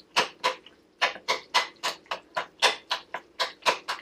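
A spoon stirring and mashing thick, wet food in a ceramic bowl, clacking and scraping against the bowl about three to four times a second, with a brief pause about a second in.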